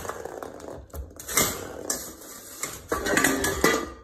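Stainless steel dog bowl clattering and scraping on a wooden floor in a run of irregular bursts as a puppy knocks it about.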